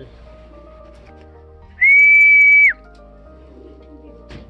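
A person whistles one steady high note lasting just under a second. It slides up slightly at the start and drops off at the end.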